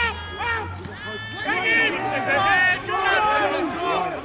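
Several voices shouting over one another, rugby players and touchline spectators calling out during play.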